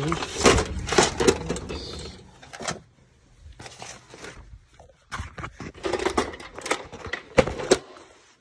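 A sheet of paper rustling and crinkling as it is handled and turned, in two spells with a quieter stretch in the middle.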